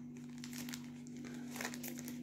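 Faint crinkling of a soft plastic wet-wipes pack being handled and opened, a scatter of small crackles.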